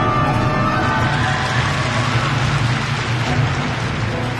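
Arena audience applauding, swelling about a second in over the skater's program music.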